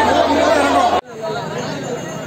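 Crowd chatter: many voices talking over one another. It cuts off abruptly about halfway through, and quieter talk follows.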